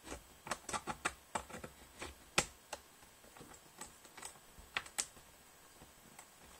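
Laptop keyboard being typed on: irregular clusters of key clicks, a few a second, with a couple of sharper taps midway and near the end.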